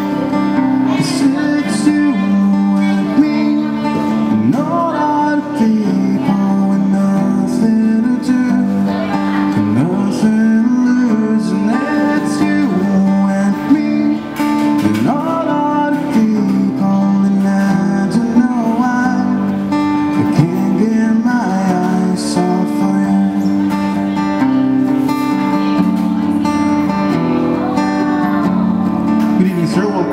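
Acoustic guitar strummed and picked, playing a steady chord accompaniment.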